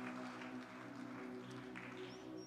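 Soft, sustained keyboard chords of worship background music, held steadily.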